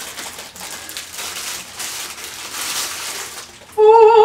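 Clear plastic packaging crinkling and rustling as it is handled, a steady crackle; a voice starts loudly near the end.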